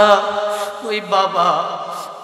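A man's voice chanting a Bangla waz sermon in a drawn-out, melodic tune with a wavering pitch. One held phrase ends just under a second in, and the next begins after a short break.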